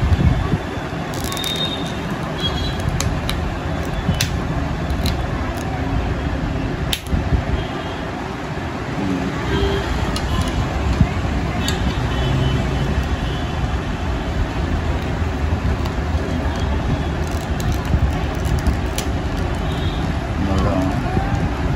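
Steady low background rumble and hiss, with scattered light clicks and taps from a thick high-minus plastic lens and a clear plastic full-rim frame being handled and pressed together.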